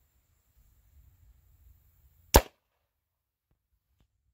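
A single large-bore airgun shot fired into a plywood-faced ballistic gel block: one sharp, short crack about two seconds in, over a faint low rumble.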